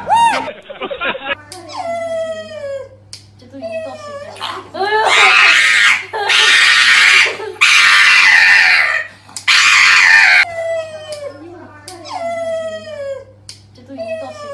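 A dog whining and howling in repeated drawn-out cries that fall in pitch, with louder, harsher cries in the middle.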